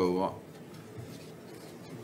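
A man's voice says a brief "uh", then faint, steady room tone of a large meeting chamber.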